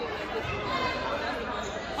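Chatter of a crowd of students talking at once in a gymnasium, several voices overlapping.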